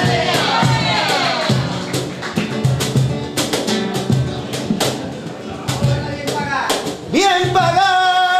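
Live flamenco music: a man's voice sings a bending, ornamented line over a strummed flamenco guitar with sharp rhythmic strikes. About seven seconds in, the voice comes in strongly on a long held note.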